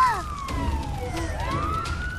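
Emergency-vehicle siren wailing: one long, slow fall in pitch and then a rise back up, with a short shout right at the start.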